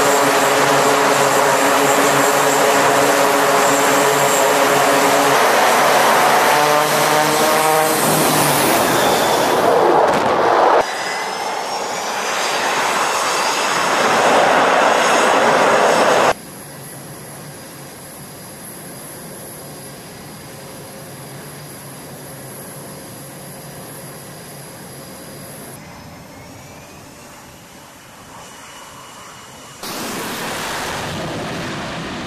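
Aircraft engines on a carrier flight deck, in several cut-together shots. A turboprop's engines and propellers run loudly with a steady droning tone that rises in pitch about seven seconds in. After a cut, there is louder jet-engine noise with rising whines. From about 16 seconds a quieter, steady high-pitched turbine whine continues.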